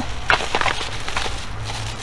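A cardboard mailing box being handled and rummaged through, with a few short crackling rustles in the first second, over a steady low hum.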